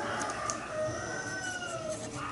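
A drawn-out animal call in the background, its pitch rising and then falling over about two seconds, with faint pen strokes on paper.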